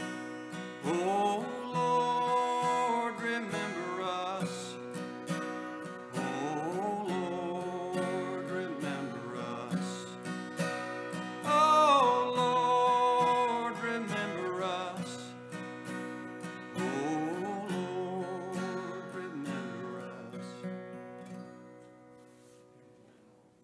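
A man singing a slow hymn to his own acoustic guitar accompaniment, the guitar played in steady repeated strokes under a held, gliding vocal line. The song winds down near the end, the guitar dying away.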